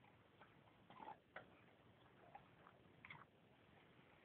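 Dog gnawing on a very large bone: faint, scattered clicks and scrapes of teeth on bone, the clearest about a second in and just after three seconds in.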